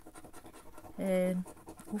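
A coin scraping the latex coating off a lottery scratch card in quick, faint strokes. A short voiced sound from the woman comes about a second in.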